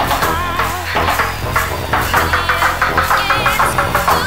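Breakbeat dance music played from vinyl in a DJ mix: a driving electronic drum beat over a steady bass, with wavering synth lines above.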